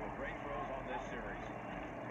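Faint football game broadcast audio: a commentator's voice, low in the mix, over a steady background haze.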